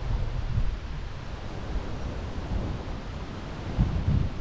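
Wind buffeting a camera microphone: a steady rushing noise with low, gusty rumbles, strongest at the start and again near the end.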